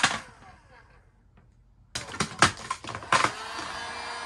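A heat gun's steady blowing cuts off with a click, leaving near-quiet for about two seconds. Then comes a quick run of sharp clicks and crackles while the vinyl wrap film is handled and stretched, and the heat gun's blowing starts up again near the end.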